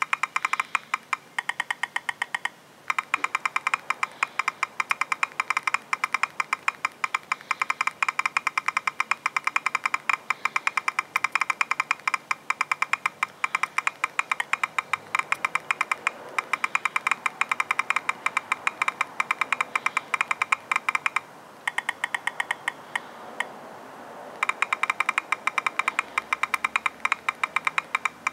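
Rapid two-thumb typing on an HTC One touchscreen keyboard running stock Android 4.3: a fast, uneven stream of short, identical key-press clicks, several a second, with a few brief pauses.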